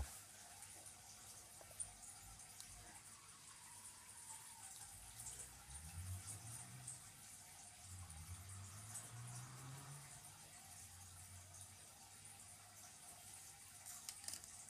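Near silence: room tone, with a faint low hum in the middle and a single soft click about two seconds in.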